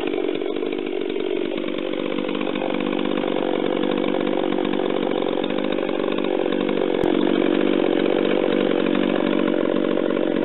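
Ported Stihl MS440 chainsaw engine running unloaded at high revs while warming up. Its pitch sags slightly about a second in, climbs back, and holds steady. A single sharp click comes near the end.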